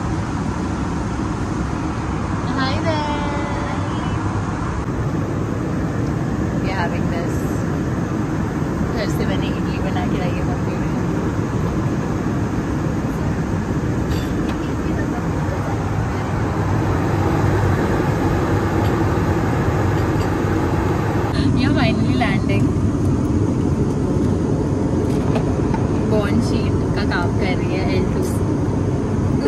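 Steady airliner cabin noise in flight, a constant low rush of engine and airflow, with faint voices in the background.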